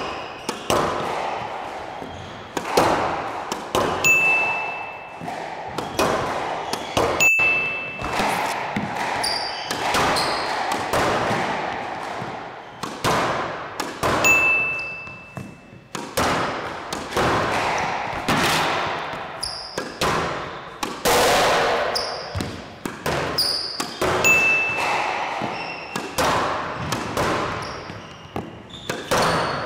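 A squash ball being volleyed continuously against the front wall of a glass-walled court, racket and wall hits coming about once a second, each ringing out in the court. A few short high squeaks from court shoes on the floor come between shots.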